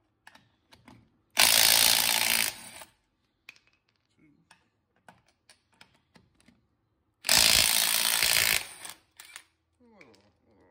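A Snap-on CT761 cordless 3/8-inch impact wrench with a 19 mm socket hammers on UTV lug nuts torqued to 120 ft-lb. There are two bursts, each about a second and a half long, one about a second in and one about seven seconds in, and each works a nut loose. Light clicks of the socket on the nuts come between them.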